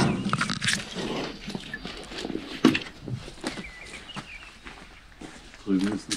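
Footsteps crunching and rustling through dry leaves, chestnut husks and debris, in irregular steps, with a few short bird chirps about halfway through.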